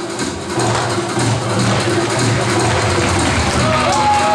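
Turkish folk dance music from the Artvin region playing loudly and without a break, with a short dip in level near the start and a melody line coming in near the end.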